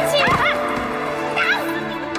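Background music with steady held notes under a woman's high-pitched shrieks and yells during a fight, once just after the start and again about a second and a half in.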